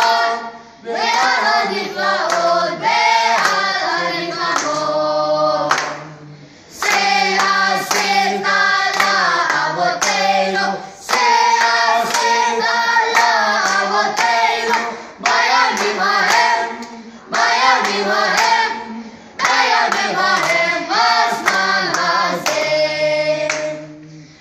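A group of voices singing a song together in phrases, with hands clapping along.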